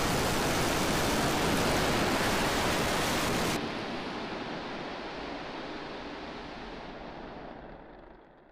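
Starship prototype's Raptor engines firing during the landing burn, a steady rushing noise that cuts off abruptly about three and a half seconds in as the vehicle sets down. A duller rumble stays on and fades away near the end.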